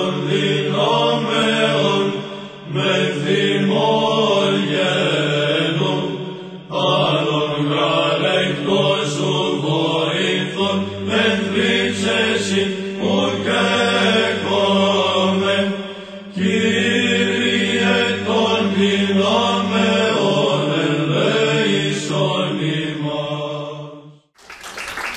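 Liturgical chant: voices singing a slow melody over a steady held drone note. A deeper drone note joins about ten seconds in and drops out around twenty seconds, and the chant cuts off suddenly at the end.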